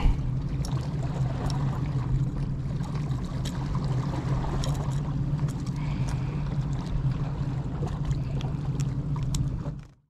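Steady wash of sea water against shoreline rocks with wind rumble on the microphone, under scattered small clicks of metal pliers working a hook out of a small fish. The sound fades out near the end.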